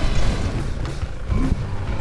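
Pickup truck's engine running as it drives slowly along a dirt track, a steady low rumble.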